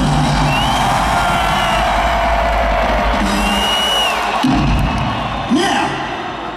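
Stadium rock-concert crowd cheering, with a couple of high whistles, over a sustained low note from the band's sound system that breaks off briefly a little past four seconds in and comes back.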